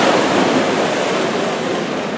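Backstroke swimmers pushing off the wall and kicking just after the start signal: a loud rush of splashing water that eases slightly over the two seconds.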